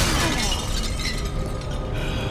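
Glass shattering: a heavy crash right at the start, then shards tinkling and scattering as they fall, dying away over about a second, with music underneath.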